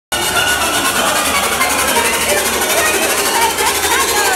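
DJ's music playing through PA speakers, with a rapid rattling repeat in the highs, about ten a second, over a room full of chatter.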